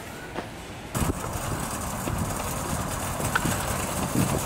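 Faint store background, then, about a second in, a steady rolling noise from a metal shopping cart being pushed across parking-lot asphalt, with a few light clicks.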